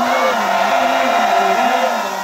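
A group of supporters shouting and cheering together, many voices at once, a cheer for a runner as he is introduced at the start of an 800 m race.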